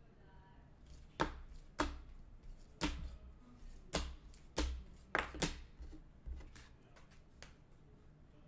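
Rigid plastic card toploaders clacking against one another as a stack of trading cards is flipped through by hand: about ten sharp clacks at an uneven pace, roughly one or two a second.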